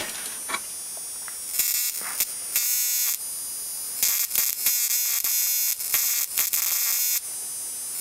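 High-voltage sparks buzzing at a flyback transformer's output, driven by a 555-based ignition coil driver, over a steady high-pitched whine. The buzzing comes in two bursts: one about two seconds in lasting about a second and a half, then a longer one from about four to seven seconds. These are small sparks and a bit of corona, not a sustained arc.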